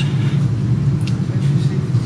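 Steady low background rumble, with a faint click about a second in.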